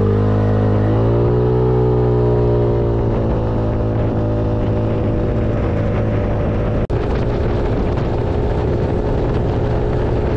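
Icebear Maddog 150 scooter's GY6-type 150cc four-stroke single accelerating hard from about 8 to 50 mph. Its pitch holds nearly steady while the belt drive shifts up, and wind noise on the microphone grows with speed. The engine is running with its air filter relocated and a 110 main jet, and the sound drops out briefly about seven seconds in.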